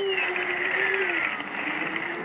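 Cartoon storm sound effect: a whistling wind tone that slides slowly down in pitch, with lower gliding tones beneath it, over a steady hiss of rain.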